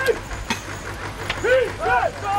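Handlers' short shouted calls urging on a pair of draft horses as they drag a heavy log sledge over a dirt track. The calls come twice in the second half, over a steady low rumble, with a couple of sharp clicks.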